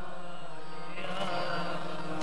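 Harmonium holding steady notes as the accompaniment to Sikh kirtan, between sung lines.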